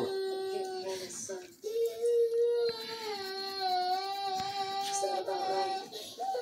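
A young child crying in long, drawn-out wails at a near-steady pitch. One wail breaks off about a second and a half in, a longer one is held for about three seconds, and another starts near the end.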